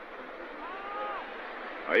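Steady murmur of a large stadium crowd, with a faint drawn-out call or voice rising and falling about a second in.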